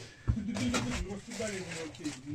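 Background chatter of several people in a small room, softer than the nearby talk, with one sharp thump about a quarter of a second in.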